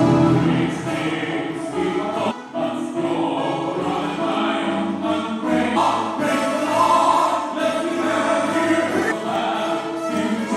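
Gospel song ministration: a man sings solo into a microphone while accompanying himself on a Yamaha PSR-series electronic keyboard.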